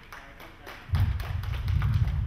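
Scattered sharp taps, then loud low thuds and rumble starting about a second in.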